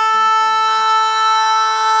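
Synthesizer holding one steady, unwavering note in an electronic post-hardcore track.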